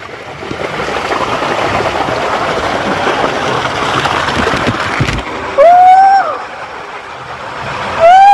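Water rushing down a water slide around a sliding rider, a steady spray noise with water hitting the camera. A knock about five seconds in, then a rider's long held cry about a second later.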